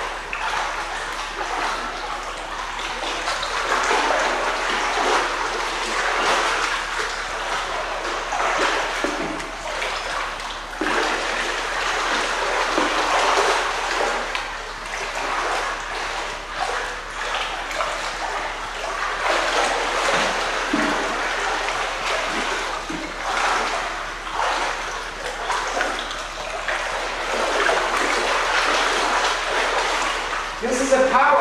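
Pool water splashing and churning continuously as a person moves vigorously through it, swelling and easing with his movements.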